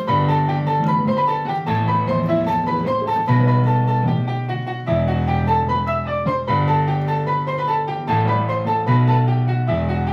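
Sequenced piano-like keyboard track playing a repeating melody over sustained low chords that change every second or two, with an electric guitar played along.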